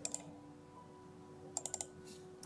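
Computer mouse and keyboard clicks: a quick double click at the start, then a fast run of four clicks about a second and a half in.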